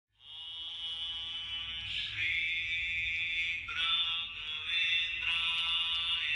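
Devotional chant sung to music: long held notes that bend and change pitch every second or two.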